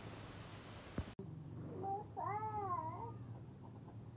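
A toddler's high, drawn-out, meow-like vocal sound that rises and falls in pitch for about a second and a half in the middle. A short click comes about a second in, where the background hiss suddenly drops away.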